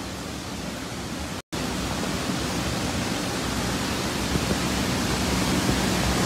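Heavy rain falling on a flooded street: a steady hiss of rain on standing water. It is broken by a brief cut about a second and a half in, and a faint low hum runs under it afterwards.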